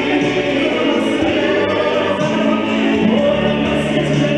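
Gospel singing: a woman's voice amplified through a handheld microphone, with other voices singing along.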